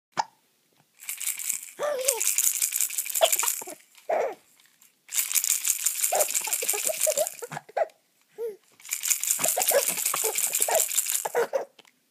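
A colourful plastic baby rattle shaken in three bursts of about three seconds each, with a baby's laughs between and under the shaking.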